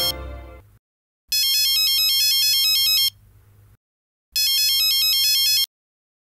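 Background music fades out, then a mobile phone ringtone plays: a short, repeating electronic melody that rings twice, each ring under two seconds, with a pause between.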